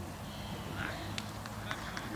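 Open-air sound of a youth football game: faint distant shouting from the pitch and a few sharp knocks in the second half, as players kick and scramble for the ball.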